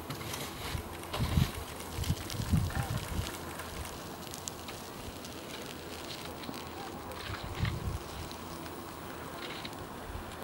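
Steady rushing noise with a few low thumps in the first three seconds and again near eight seconds.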